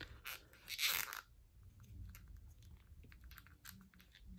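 Plastic joints of a NECA Punk Frog action figure creaking and clicking as the limbs are bent by hand, with fingers rubbing over the figure. There are two short scratchy rustles in the first second, then faint, irregular small clicks.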